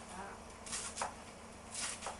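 Kitchen knife shredding a cabbage on a plastic chopping board: three crisp cuts through the leaves, the last near the end.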